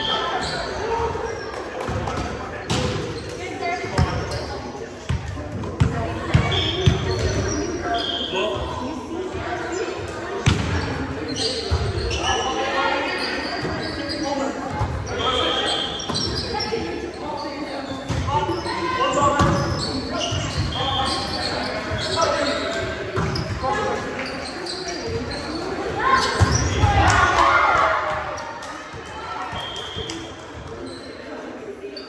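Indoor volleyball rally in an echoing gymnasium: the ball is struck again and again, giving short sharp thuds among players' voices calling across the court. The voices grow louder for a couple of seconds near the end.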